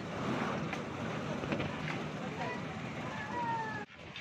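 Outdoor background noise with wind on the microphone and faint distant voices; a short falling whistle-like tone near the end.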